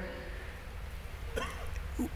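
Pause in a man's speech: a low steady hum, with one short, sharp breath sound about one and a half seconds in.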